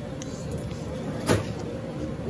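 Steady hum of a supermarket checkout area, with one short thump about a second and a half in.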